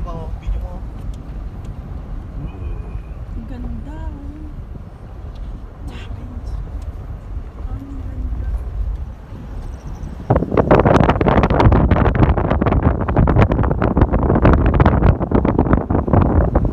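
Low road and engine rumble inside a car's cabin on a downhill drive; about ten seconds in, a sudden loud rush of wind buffeting the microphone, as from an open car window at speed.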